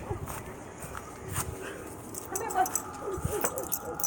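A dog whimpering, a few short whines in the second half.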